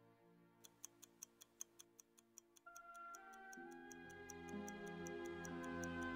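Mechanical stopwatch ticking about five times a second. From about three seconds in, sustained music chords join it and slowly grow louder.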